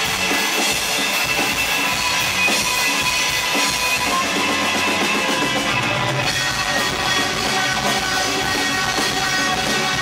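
Rock band playing live on electric guitars, bass guitar and drum kit in an instrumental passage. About halfway through, the drum beat thins out and sustained guitar and bass chords ring on.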